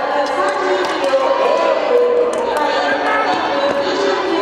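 Several voices shouting and talking at once over a crowd murmur, typical of coaches and spectators calling out encouragement to skaters during a race.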